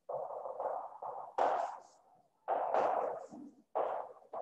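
Whiteboard marker writing on a whiteboard: about four separate scratchy strokes of under a second to about a second each, with short gaps between them.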